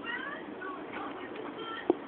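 A cat meowing faintly: a few short rising calls, the clearest near the start. A brief louder sound comes just before the end.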